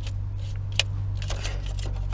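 Band-type oil filter wrench clicking and scraping on a spin-on oil filter as it is worked loose. One sharp click comes a little under a second in, with fainter ticks later, over a steady low hum.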